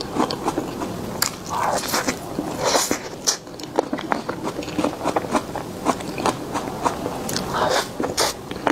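Close-miked mouth sounds of eating soft cream cake from a spoon: many quick, irregular wet clicks and smacks of lips and tongue while chewing.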